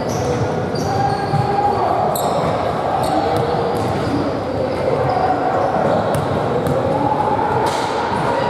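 Indistinct voices echoing around a large gymnasium, with a few scattered knocks of a basketball bouncing on the hardwood floor.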